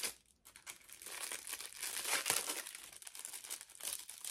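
Packaging crinkling as a small packet of stickers is opened and handled, starting about half a second in.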